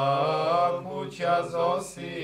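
Orthodox monks singing a slow church chant in men's voices, holding long notes that glide gently in pitch.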